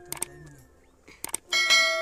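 Subscribe-button sound effect: a few sharp clicks, then about one and a half seconds in a bright bell chime that starts suddenly and rings on, fading.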